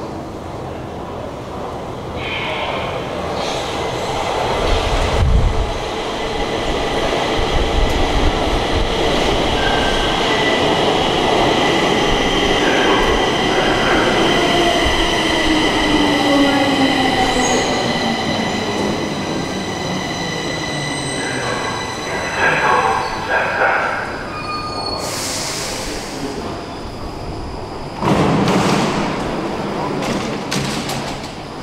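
Stockholm metro train arriving at an underground platform. The noise of the train builds as it comes in, with steady high-pitched squeals from the wheels. A motor whine falls in pitch as it brakes to a stop. A short hiss of air follows, then a sudden burst of noise near the end as the doors open.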